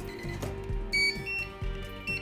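Handheld barcode scanner beeping once, a short high beep about a second in, as it reads a UPC barcode. The beep is the sign of a good read: the scanner works. Background music runs underneath.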